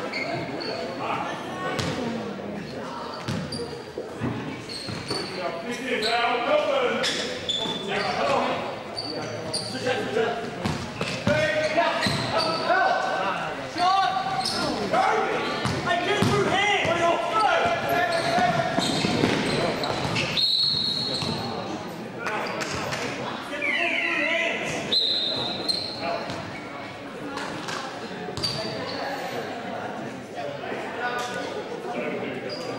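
Live basketball game in a reverberant gym: the ball bouncing on the court, sneakers squeaking sharply now and then, and players and spectators calling out.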